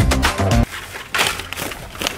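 Background music with a quick beat stops abruptly about a third of the way in. It is followed by a few short crackles and rustles of dry weeds and stems being pulled by a gloved hand.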